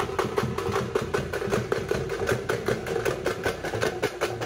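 A group of thappu (parai) frame drums played together in a fast, even beat of about eight strokes a second, the drumheads ringing.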